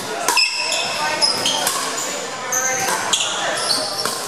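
Pickleball paddles striking a plastic ball in a rally: several sharp pops, some followed by a brief high-pitched tone, echoing in a large gym, with voices behind.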